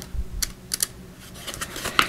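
Pages of a small paperback guidebook being flipped by hand: a handful of short, irregular papery flicks as the pages riffle past.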